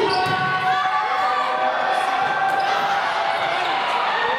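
Indoor volleyball play: a few sharp hits of the ball, over steady shouting and voices from players and spectators in a gym.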